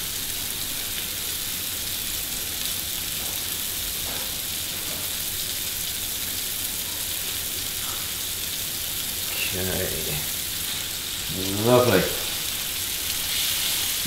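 Beef burger patties sizzling steadily in butter in a hot frying pan, an even high-pitched hiss.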